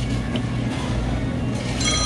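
Steady low hum of restaurant room noise. Near the end a high electronic ringing starts, like a telephone.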